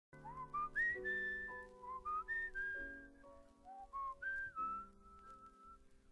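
A tune whistled over held accompaniment chords, each phrase sliding up into its notes and ending on a long held note: the instrumental introduction of a French song.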